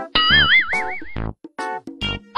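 Background music of short pitched notes and low beats, with a springy, wobbling sound effect about a second long near the start: a tone that rises and then warbles up and down several times.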